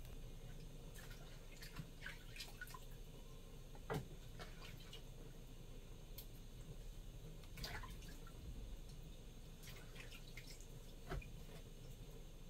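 Faint water splashes and drips as hands wash soaked dried fish in a plastic bowl of water, in scattered small strokes with one slightly louder splash about four seconds in.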